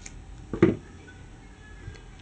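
A single snip of small scissors cutting through crochet yarn at the start, followed about half a second later by a short, louder low sound.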